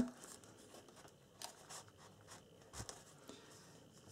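Faint rustling and a few light taps of cardstock pages and a paper insert being handled.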